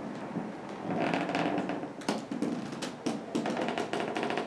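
Irregular light taps and clicks over a soft rustle, thickening from about a second in: footsteps on the floor and handling noise of a carried camera.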